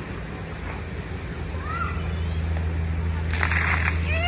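Splash-pad water spray over a steady low hum, ending in a short, dense burst of splashing as a person steps into the jet of water near the end.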